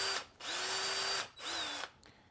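Electric drill with a small bit running in two short bursts, the first just under a second and the second about half a second, drilling straight down through a Holley 94 carburetor base to break into its vacuum port. The motor's whine rises as it spins up at each start.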